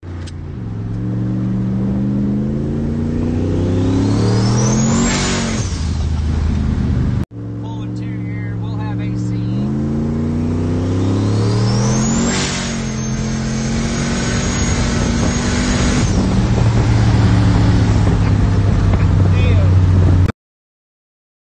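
Turbocharged Coyote V8 in a Ford F-150 Lightning pickup, heard from inside the cab under hard acceleration. The engine pitch climbs in two long pulls, each falling back at a shift. Near the top of each pull a thin turbo whistle sweeps up high, and in the second pull it holds as a steady high whine for a few seconds before the engine drops back.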